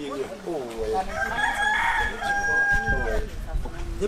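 A rooster crows once, starting about a second in: a rising call that holds a long steady note and then falls away.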